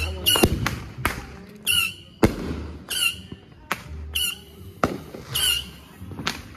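Fireworks and firecrackers going off in several sharp cracks, the loudest a little over two seconds in. Between them comes a short, high squawking call, repeated about once a second.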